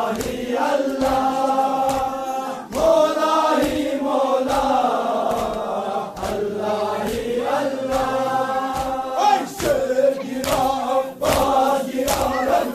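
A group of men chanting a Muharram noha (lament) together, with sharp slaps of chest-beating (sina zani) cutting through the chant at a rough beat.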